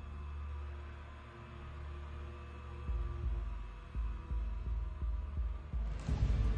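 Suspense film soundtrack: a low, steady drone with held tones. From about halfway through, a low heartbeat-like pulse of about three thuds a second joins it.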